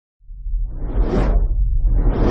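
Whoosh sound effect of an animated logo intro, swelling to a peak about a second in and fading, then a second whoosh rising near the end, over a deep low rumble.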